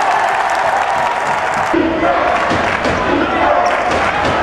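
A basketball dribbled on a hardwood court, with short irregular bounces over the steady noise of an arena crowd.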